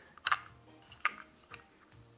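Handling noise: three sharp plastic clicks and taps as a small RC sound module and its cable plug are picked up and handled in the hands, the first and loudest about a quarter second in. Faint background music underneath.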